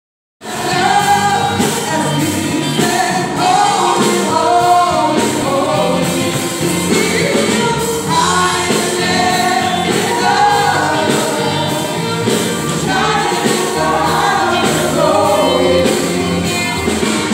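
A live gospel worship band, several singers on microphones backed by keyboard, drum kit and electric guitars, singing and playing with a steady drum beat. It starts abruptly about half a second in.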